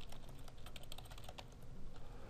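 Typing on a computer keyboard: a quick run of keystroke clicks that thins out after about a second and a half.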